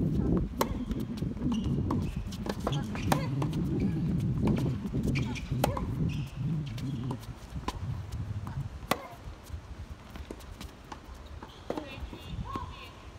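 Tennis rally on a hard court: a series of sharp pops and knocks as the ball is struck by rackets and bounces, over a low murmur of voices.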